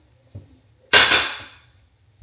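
A glass food container set down in a refrigerator: a faint tap, then about a second in one sharp clink that rings briefly and fades.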